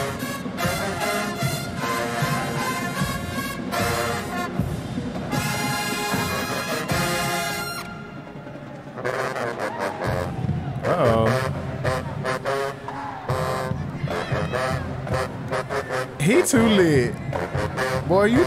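HBCU marching pep band playing, a brass ensemble with sousaphones and trumpets. Voices shout over the music near the end.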